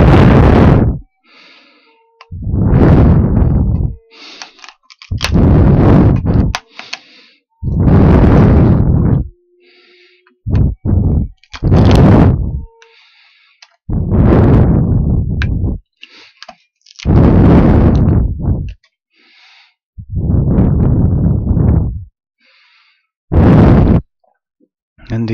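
A hand tool working a block of wood held in a bench vise, about nine loud strokes, each about a second long and a second or two apart.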